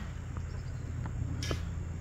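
One short scrape of a garden tool digging into wood-chip mulch, about one and a half seconds in, over a steady low rumble.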